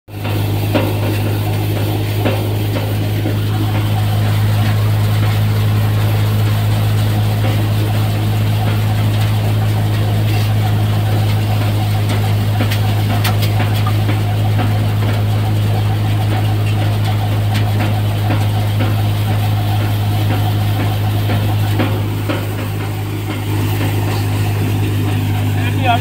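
Threshing machine running steadily while threshing cowpea, with a constant low hum and scattered light ticks.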